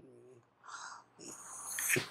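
A man's breathing in a pause between spoken phrases: a soft breath, then an inhale that grows louder just before he speaks again.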